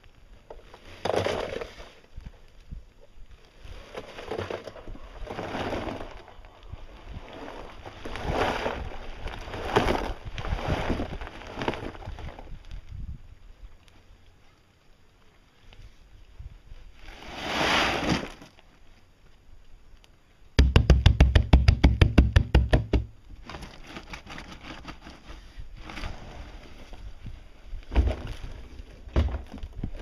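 Concrete mix tumbling and sliding inside a plastic drum rolled on the ground, in gritty swishes about a second long. Past the middle comes a loud, fast rattle lasting about two seconds, and a few knocks near the end.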